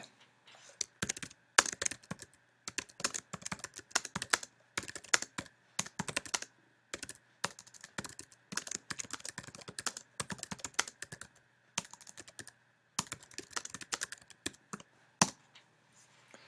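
Typing on a computer keyboard: runs of quick, irregular key clicks with short pauses between words and phrases, and a single louder click near the end.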